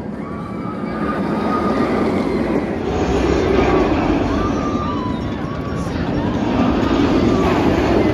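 Steel inverted roller coaster (Cedar Point's Raptor) running overhead: a loud rumble of the train on its track that swells twice as it passes, with voices mixed in.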